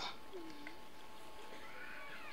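A pause between stretches of a man's speech: low background noise with a faint steady hum, broken by two faint short calls, a low one about half a second in and a higher one near the end.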